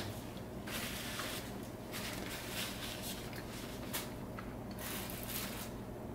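Paper napkin rustling softly in the hands as greasy fingers are wiped, in irregular short bursts with pauses between.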